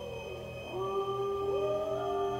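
A wolf howl sliding down in pitch and then rising again, set against held orchestral tones.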